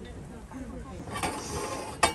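Metal casket hardware working: a grinding, ratcheting stretch starting about a second in, ending in a sharp click.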